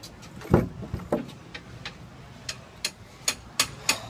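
Handling noise from a handheld phone: irregular light clicks and knocks, with a duller thump about half a second in.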